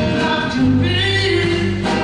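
Live rock band playing, with a sung lead vocal over acoustic and electric guitars, bass and drums.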